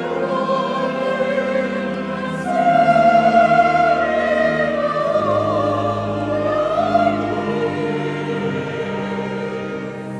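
Choir singing a hymn over an accompaniment of long held low notes. The singing swells about two and a half seconds in, then eases toward the end.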